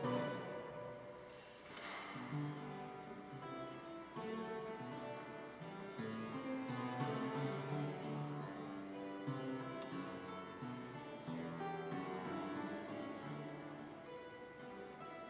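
Clavichord being played solo: a continuous passage of classical keyboard music. The playing thins out briefly about a second and a half in, then carries on fuller.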